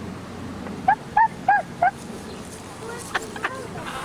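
A bird honking four times in quick succession, the calls about a third of a second apart, each rising and falling in pitch.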